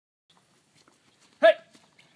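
A man shouts "Hey!" once, loud and sharp, about one and a half seconds in. Before it there are only a few faint scattered taps.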